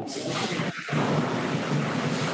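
A steady, static-like rushing noise on the video-call audio, with a brief dip about three-quarters of a second in.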